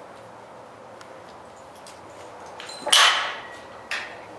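A horse, a mare being bridled, blows out hard through her nostrils once, about three seconds in; the noise dies away over about half a second. A short click follows just before the end.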